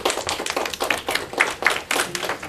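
Small group of students clapping: a short round of applause in which the separate hand claps are heard, irregular and overlapping.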